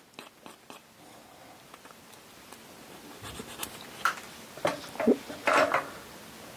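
Hand file faintly rasping on a small plastic model wheel, roughing it up for gluing; from about halfway on, a scatter of light clicks and knocks.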